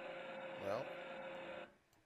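Starter-motor sound effect from an electronic training animation: a steady electric hum at several fixed pitches that cuts off suddenly near the end.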